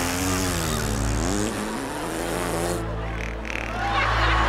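Studio audience laughing and cheering for about three seconds, with a voice wavering up and down in pitch above it, over steady low background music; the crowd noise thins out near the end.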